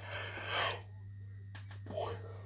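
A person breathing out once, a soft breathy rush lasting under a second, then quiet over a steady low hum.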